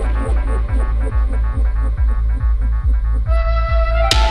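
Progressive psytrance at 140 bpm: a steady kick drum with a rolling bassline under quick hi-hats. Near the end the hi-hats drop out and a held synth note comes in.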